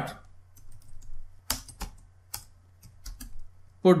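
Typing on a computer keyboard: scattered, irregularly spaced keystrokes.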